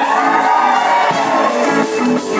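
Live pit band playing a musical-theatre number, with electric guitar among the instruments.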